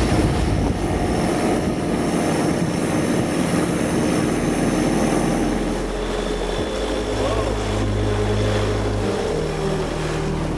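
Thai longtail boat's engine running steadily while the boat is under way.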